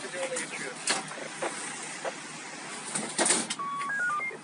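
Police radio traffic: steady static hiss with faint, garbled voices, a burst of squelch noise about a second in and another louder one near the end, then a couple of short beep tones just before the end.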